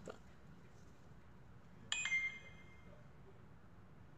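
A single bright ding about two seconds in, ringing out briefly over faint room tone.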